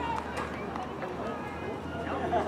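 Indistinct voices of people calling out on the field, with a couple of short sharp clicks about half a second in.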